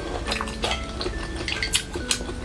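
Close-miked eating sounds: chopsticks clicking against a glass dish of chili sauce while dipping food, mixed with wet chewing, a quick run of short clicks and smacks.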